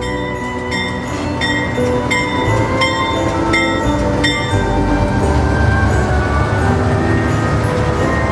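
Diesel locomotive and passenger car rolling slowly past on the track, a steady low rumble. Over it a bell rings in even strokes about 0.7 s apart, stopping a little past halfway.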